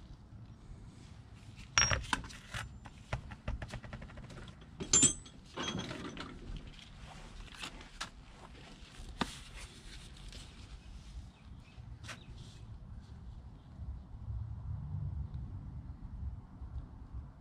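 Handling noise at a wooden workbench: scattered clinks and knocks as a large steel socket and other tools are picked up and set down, with a quick run of small ticks early on and louder knocks about five seconds in.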